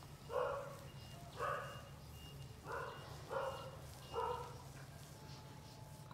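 A dog barking faintly in the background, five short barks spread unevenly over about four seconds.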